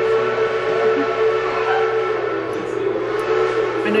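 A steam locomotive's whistle blowing one long, steady note, with several tones sounding together: the signal that the train is back.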